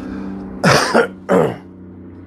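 A man coughing twice, two short harsh coughs about two thirds of a second apart.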